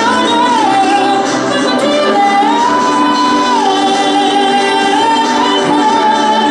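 A woman singing a slow melody into a microphone over instrumental accompaniment, holding long notes; she moves up to a higher held note about two seconds in and comes back down about a second and a half later.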